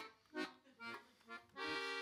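Piano accordion playing four short chords about half a second apart, then a held chord near the end.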